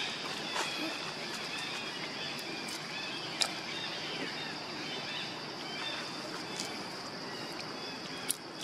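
Outdoor ambience: scattered short bird chirps over a steady high-pitched hiss, with a sharp click about three and a half seconds in.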